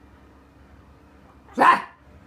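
A single sudden, loud vocal burst about a second and a half in, lasting a fraction of a second: a startle noise made to make a baby jump.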